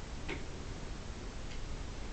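Quiet classroom room noise, with one faint click about a third of a second in.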